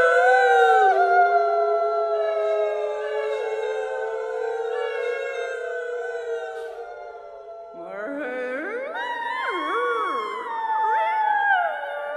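Several female voices singing together in long held notes that drift slowly in pitch. About eight seconds in, they break into overlapping glides that slide up and down.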